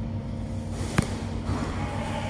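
A single sharp click about a second in, over a low steady background hum.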